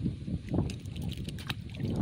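A small traíra released from fishing pliers and dropping into the lake beside an aluminium boat: a few short clicks and a light splash, over a steady low rumble of wind on the microphone.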